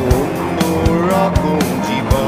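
Instrumental passage of a rock band song: an electric guitar lead with gliding, bending notes over drums and bass, with no singing.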